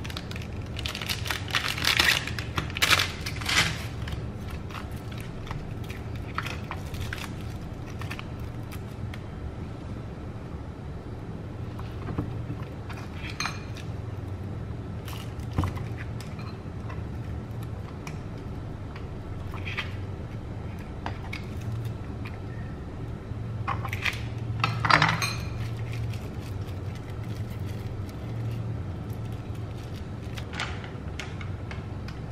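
Plastic wrapper of processed cheese slices crinkling as slices are peeled out of the pack, then scattered knife taps and knocks on a wooden cutting board as the slices are cut, over a steady low hum.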